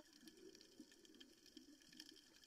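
Near silence: faint muffled underwater noise from a camera held under water, with light scattered crackles.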